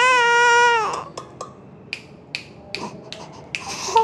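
A cranky infant crying: one loud, held wail through the first second, then only faint, short sounds.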